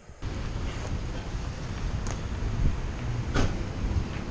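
Wind buffeting a handheld camera's microphone outdoors: a steady low rumbling rush that starts suddenly just after the start, with a couple of brief knocks partway through.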